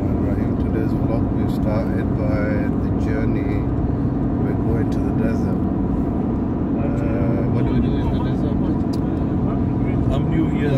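Steady engine and road rumble inside the cabin of a moving vehicle, with voices talking over it.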